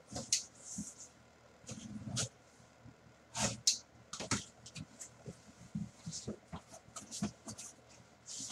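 A box cutter slitting packing tape along a cardboard box's seams, then the cardboard flaps being pulled open and handled: an uneven run of short scrapes, rips and knocks, the loudest about halfway through.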